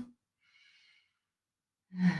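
Near silence between spoken phrases, with one faint breath lasting under a second about half a second in.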